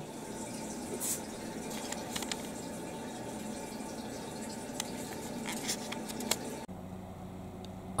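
Toilet refilling just after a flush: a steady rush of water into the bowl and tank with a few faint drips. Near the end it gives way to a quieter low steady hum.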